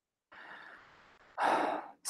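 A man breathing audibly between sentences: a faint breath, then a louder sigh-like breath about a second and a half in.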